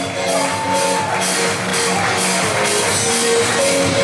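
Live electro-pop music: a euro-pop dance song performed on stage, with held synth-like notes over a full, continuous band sound.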